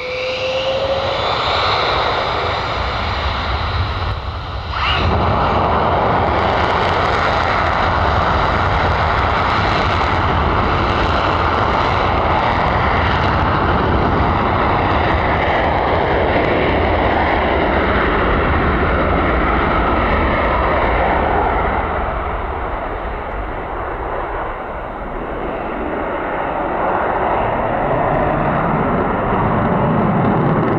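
F-15 fighter jet taking off, its twin jet engines loud and steady. The noise jumps up about five seconds in as the jet powers down the runway, dips briefly later on and swells again near the end as it climbs away.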